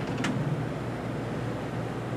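Steady room tone in a hall: an even hum and hiss typical of air conditioning, with a brief faint tick about a quarter second in.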